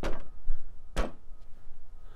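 Two sharp knocks about a second apart: a shoe kicking solid plastic rink boards to square up the frame.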